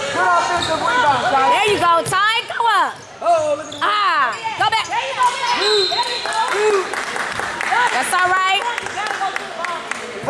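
Basketball game sounds echoing in a gym: a ball bouncing on the hardwood court, sneakers squeaking, and players and spectators calling out.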